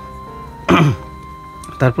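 Background music of steady sustained notes under a person's voice: a short vocal sound under a second in, and speech starting again near the end.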